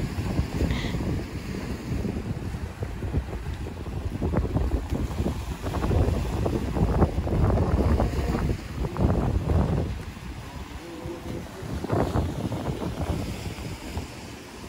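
Wind buffeting the microphone in uneven gusts, a low rumble over the wash of the sea on a rocky shore.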